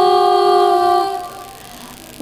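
Girls' voices singing a single long held note of a sholawat, which fades out about a second in into a brief lull.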